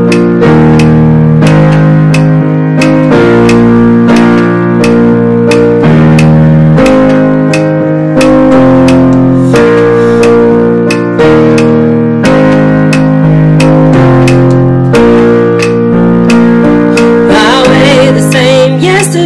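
Gospel worship song playing from a recording: sustained keyboard and guitar chords over a steady beat, the chords changing every second or two, with a voice starting to sing right at the end.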